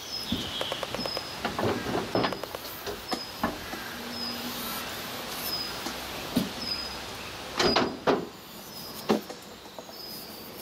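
Knocks and clatter of a miniature steam locomotive being handled at the track, with a few sharper knocks near the end. Through it a small bird repeats a short high note at an even pace, about every two-thirds of a second.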